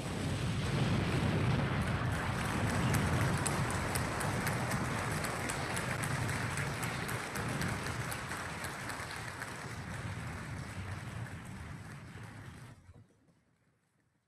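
A DJ sound effect closing the set: a dense noisy rumble with a heavy low end and faint rapid ticks on top, slowly fading and dying away about thirteen seconds in.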